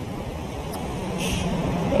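City street traffic noise with a steady engine hum, growing gradually louder.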